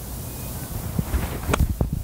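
Wind buffeting the microphone, with a single sharp click about one and a half seconds in: a 56-degree wedge, its face laid wide open, sliding under the ball off tight fairway turf on a flop shot.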